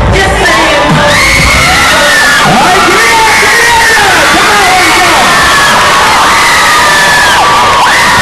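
A crowd of kids shouting and cheering loudly, many voices at once with high yells rising and falling.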